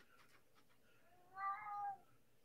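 A domestic cat meowing once, about one and a half seconds in: a short call that rises slightly in pitch.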